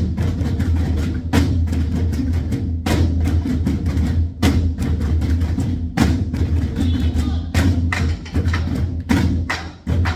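A group of nanta drummers striking large barrel drums with sticks together in a fast, driving rhythm, the gijang-dan (train rhythm) used in nanta classes, with many sharp strikes over a deep drum boom.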